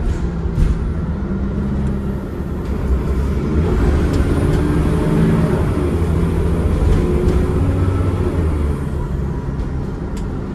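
Cummins ISCe 8.3-litre diesel engine and ZF Ecomat gearbox of a Transbus Trident double-decker, heard from inside the lower saloon while the bus is under way. The engine gets louder about three to four seconds in, pulling harder, and eases off near the end.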